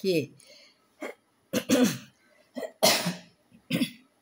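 A person coughing and clearing their throat several times in short, separate bursts, the loudest about three seconds in.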